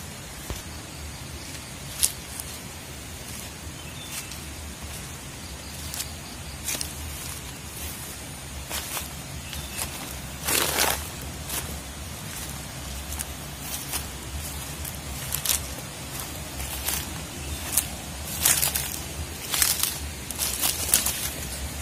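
Footsteps crunching through dry leaf litter and brushing through low undergrowth, heard as irregular short crackles and rustles. There is a longer, louder rustle about halfway through and a quicker run of crunches near the end.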